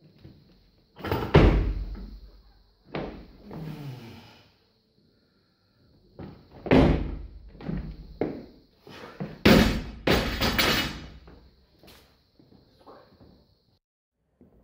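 A clean and jerk of a 105 kg barbell with rubber bumper plates. There is a heavy thud about a second in as the bar is cleaned to the shoulders, another at about seven seconds as it is jerked overhead, and the loudest crash near ten seconds as the bar is dropped to the platform and the plates rattle and bounce.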